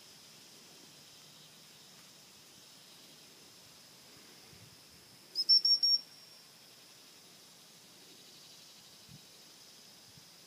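Gundog training whistle blown as a quick run of about five short high pips about halfway through, the rapid-pip pattern used to recall a retriever. A faint steady drone of insects runs beneath.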